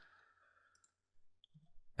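Near silence with a few faint, brief computer clicks around the middle, the sound of saving a file and switching to a web browser to refresh it.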